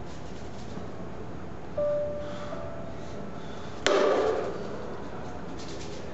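A short steady tone about two seconds in, then a sharp knock with a brief ringing decay just before four seconds in, the loudest sound here, over steady background hiss.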